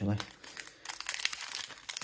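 Foil trading-card pack wrapper crinkling as it is handled and torn open by hand, a dense run of crackles that gets louder about a second in.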